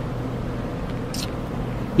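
Steady hum of honeybees crowding a frame of comb lifted from an open hive, with a brief hiss about a second in.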